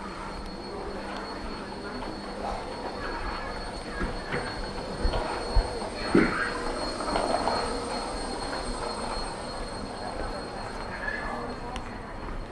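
Pedestrian-street ambience: footsteps and scattered voices over a steady high-pitched whine, with a few short knocks about halfway through.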